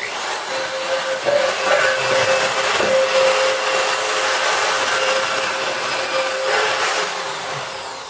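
Handheld corded electric drill running at full speed with a steady hum, spinning up at the start and winding down about seven seconds in.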